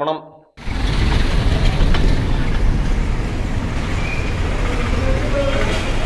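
A man's voice stops about half a second in; then a vehicle engine runs steadily with a heavy low rumble, and people's voices are heard faintly behind it near the end.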